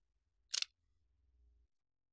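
A single short, sharp click about half a second in, over a faint low hum.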